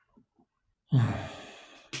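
A man's loud sigh: a breath let out that starts suddenly about a second in and fades away over the next second. A few faint clicks come before it.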